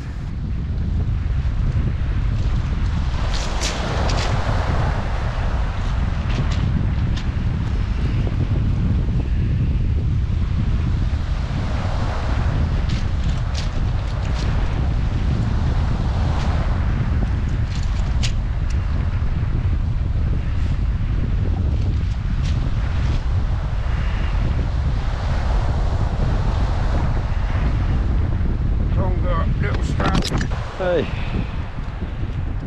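Wind buffeting the microphone, a loud steady low rumble, with the wash of waves on a shingle beach swelling every few seconds and scattered sharp clicks.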